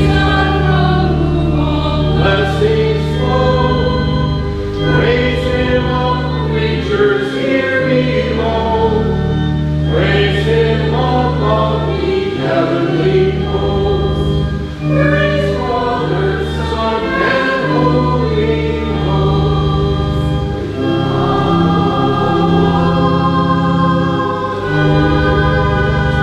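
A hymn sung by several voices over sustained organ chords.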